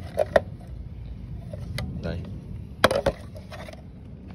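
A few sharp plastic clicks and knocks as a B-Share RLBC-144 battery charger and its battery pack are handled and the charger is turned over on concrete. The loudest is a quick double knock about three seconds in.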